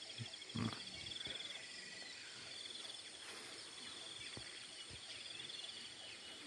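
Faint outdoor ambience of insects chirping: a steady, rapidly pulsing high-pitched drone, with a few faint bird calls here and there.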